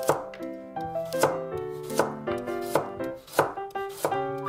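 A kitchen knife slicing a carrot into half-moons on a wooden cutting board: about five cuts, each a sharp knock as the blade meets the board, over background music.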